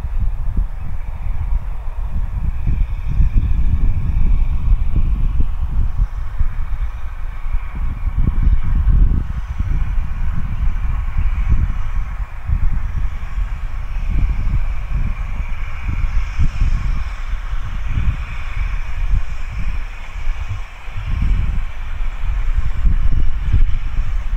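A steam locomotive hauling a rake of coaches runs along the line some way off. Wind buffets the microphone throughout in loud, irregular low gusts that largely cover the train.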